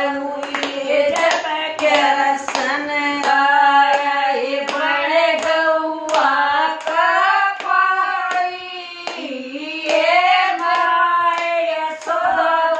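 Women singing a Krishna bhajan together in unison, keeping time with steady hand claps, with no instruments.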